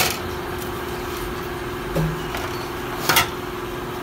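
A metal baking sheet clinking against the oven's wire rack as it is pushed in: a sharp clink at the start, a light knock about two seconds in, and a quick cluster of clinks about three seconds in, over a steady hum.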